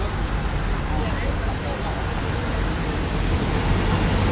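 Street ambience: a steady low rumble of traffic with faint voices of people nearby.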